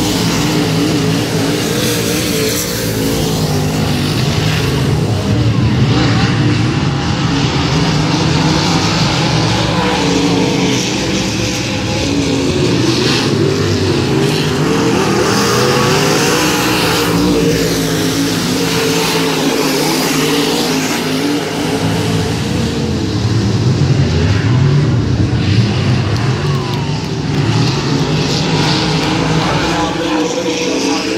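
A pack of dirt-track modified race cars' V8 engines running at speed around the oval, the engine note rising and falling as the cars lap. It swells as cars pass close, about six seconds in and again around twenty-four seconds, and eases as they move down the far side.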